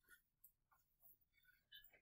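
Very faint scratches and light taps of a stylus writing on a touchscreen, a few short strokes with the clearest near the end.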